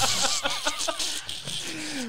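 Men laughing over a loud hiss that fades after about a second.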